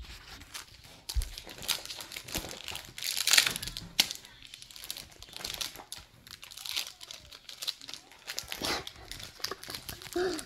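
Hockey card pack wrapper crinkling and tearing as it is handled and ripped open by hand, in irregular crackles that are loudest about three seconds in, with a low knock just after the first second.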